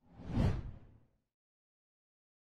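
A single whoosh sound effect for a graphic title-card transition. It swells to a peak about half a second in, with a deep low end, and fades out within about a second.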